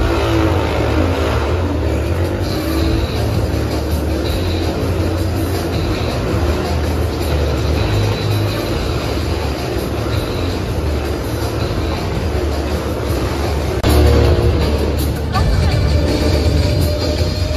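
Motorcycle engines running and revving inside a steel-mesh globe of death, mixed with loud show music, getting louder near the end.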